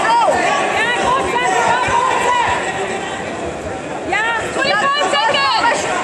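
Several voices calling out at once over crowd chatter: coaches and spectators shouting to the grapplers. The calls thin out in the middle and pick up again about four seconds in.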